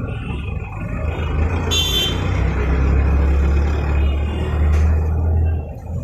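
A motor vehicle's engine running close by, growing louder over the first few seconds and dropping away near the end, with a brief high squeal about two seconds in.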